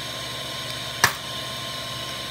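Steady background hum with faint held tones, broken by a single sharp click about a second in.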